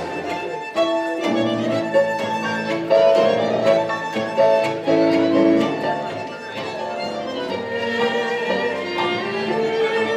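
Tango orchestra music with violins carrying the melody over sharp rhythmic accents.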